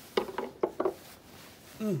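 Four quick knocks and clinks of tableware in the first second, followed by a short hummed "mm" near the end.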